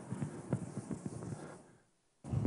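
Chalk tapping and scratching on a blackboard: a string of faint irregular clicks over the first second and a half, then near silence near the end.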